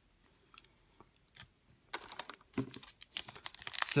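Foil trading-card pack wrapper crinkling as it is handled, starting about two seconds in after a near-quiet start with a couple of faint clicks.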